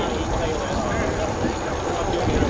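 Indistinct talking of people near the microphone, over a low steady rumble.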